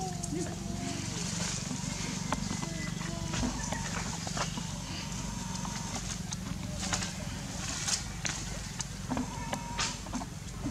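Outdoor ambience: a steady low rumble, with a few short wavering calls near the start and again about three seconds in, and scattered sharp clicks.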